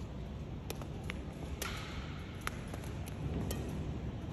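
Several faint, sharp taps, roughly every half second, from a badminton racket striking a shuttlecock in soft net-shot practice, over the low hum of an indoor hall.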